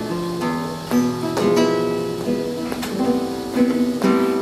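Acoustic guitar playing: a few chords and single notes plucked or strummed, each left to ring.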